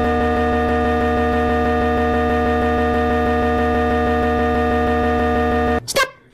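A steady electronic drone: one held chord of several pitches over a buzzing low hum, unchanging, that cuts off suddenly near the end.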